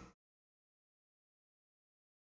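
Silence: the preceding sound fades out just after the start, then the soundtrack is completely silent.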